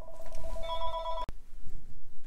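A short electronic ringing tone: two steady pitches held from the start, joined about halfway through the first second by a brighter tone, all cutting off suddenly with a click a little over a second in.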